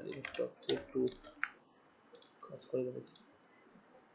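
Computer keyboard keys and mouse clicks: a quick run of sharp clicks in the first second and a half, then a few scattered ones.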